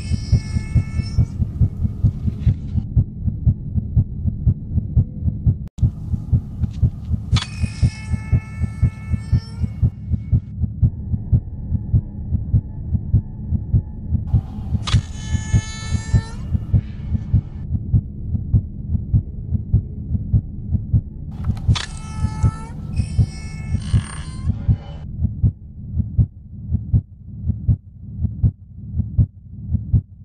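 Heartbeat sound effect pulsing steadily about twice a second, with four long pitched tones swelling over it; the beats slow and spread out near the end.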